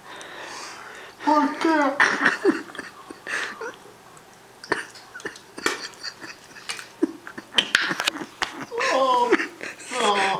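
A person laughing and making wordless vocal sounds, once about a second in and again near the end, with scattered sharp clicks in between.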